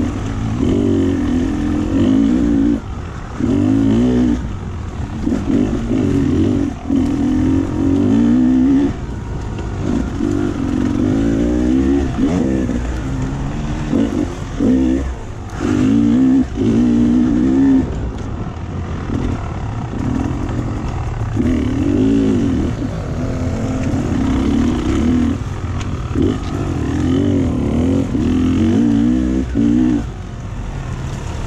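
Enduro dirt bike engine under load, revving up and down in repeated surges as the throttle is opened and closed, with short dips in between.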